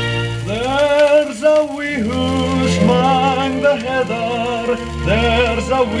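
A 78 rpm shellac record playing on a turntable: after a held orchestral chord, a man sings with a strong vibrato over the orchestral accompaniment, coming in about half a second in.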